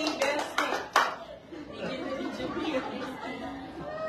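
Small-group applause tapering off within the first second, with a sharp click about a second in, then low indistinct chatter and murmuring.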